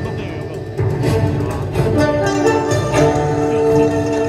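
Live Chinese instrumental ensemble playing a melody on violin and bamboo flute over keyboard, with long held notes growing fuller about a second in.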